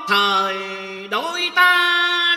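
Vietnamese ballad sung over a karaoke backing track: a long low held note slides up about a second in to a higher held note, over a sustained backing tone.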